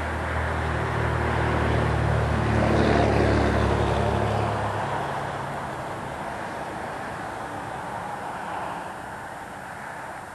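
A road vehicle passing by: its low engine note builds to its loudest about three seconds in, then fades out by about five seconds, leaving a steady hiss.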